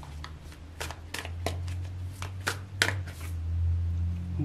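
A deck of tarot cards being handled and a card drawn from it: about ten crisp card flicks and slides at irregular intervals, over a low steady hum.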